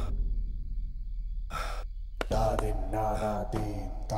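A person gasping: a sharp breath in about one and a half seconds in, then a drawn-out voiced moan on the breath out, over a steady low hum.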